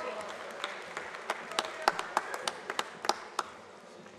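Audience applause for a graduate crossing the stage, heard as a dozen or so separate hand claps over a light spatter, thinning out and dying away near the end. A held cheering voice trails off at the start.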